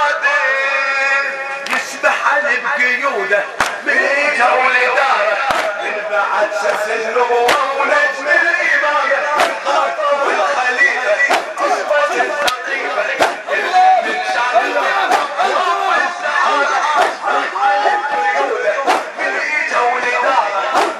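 Men chanting a Shia mourning elegy (latmiya): a lead reciter's voice over crowd voices, punctuated by sharp chest-beating slaps about every two seconds.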